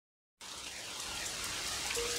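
Recorded rain sound fading in after a short silence, a steady hiss that grows slowly louder, opening the track.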